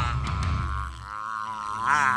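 A man's long, strained yell held over the last notes of a heavy rock song. The music's low end stops about a second in, and the yell rises in pitch near the end.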